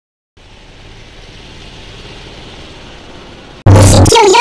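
Steady vehicle noise, a low rumble under an even hiss, starting after a moment of silence and growing slightly louder. Loud music and a voice cut in near the end.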